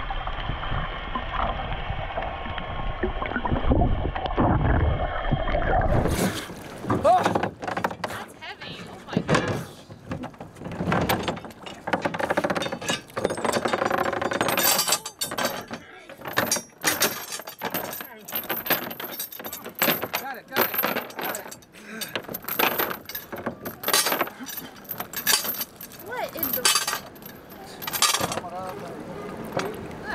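Muffled underwater water noise, then, from about six seconds in, a metal anchor chain hauled up by hand over a boat's side: irregular clinks and rattles of the links against the hull, with water sloshing.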